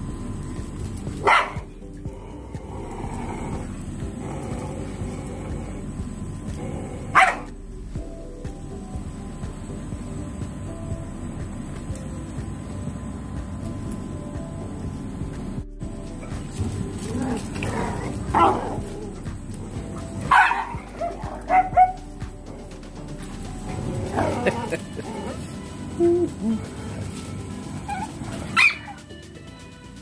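A group of dogs playing together, giving two sharp barks in the first part and then a run of barks, yips and whines in the second half.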